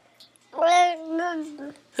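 A toddler's drawn-out, meow-like vocal sound starting about half a second in. It is a held, level call of about a second, with a short break partway through.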